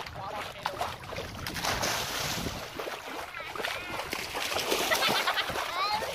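Swimming-pool water splashing and sloshing as people move in it, with voices calling out over it and one rising cry near the end.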